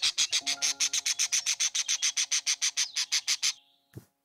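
Parrot calling in a fast, even run of sharp high chirps, about eight a second, that stops about three and a half seconds in.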